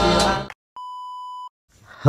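Intro music breaking off about half a second in, then, after a short silence, a single steady high electronic beep lasting under a second.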